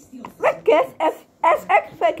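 A small dog yapping: about five short, high-pitched yaps in two quick bunches.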